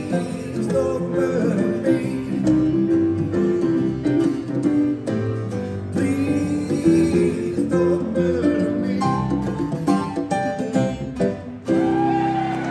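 A man singing live into a microphone while playing a cutaway acoustic guitar, a solo acoustic song.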